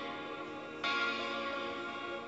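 Background music with guitar, a new chord or phrase coming in about a second in.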